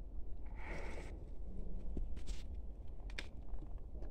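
Steady low rumble of handling noise on a handheld microphone, with a soft rustle near the start and a few brief clicks.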